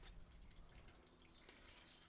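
Near silence: faint outdoor background with a few soft clicks, as torn cardboard is pushed in among scraps in a plastic wormery box.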